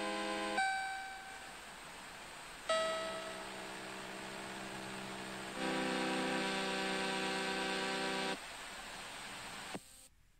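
Samsung phone's boot-up sound: sustained, piano-like chords that change several times and stop about a second and a half before the end. A quieter steady tone follows and ends with a short click as the phone reaches its lock screen.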